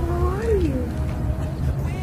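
A voice singing a long held note that bends up and then falls away in the first second, over a steady low rumble.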